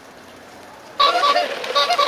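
Faint outdoor background, then about a second in a band's music starts abruptly and loudly, with short pitched notes that change from note to note.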